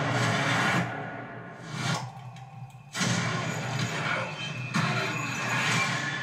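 Dramatic film-trailer music with held tones, swelling into a whoosh about two seconds in, dropping out briefly, then coming back suddenly with a loud hit about three seconds in.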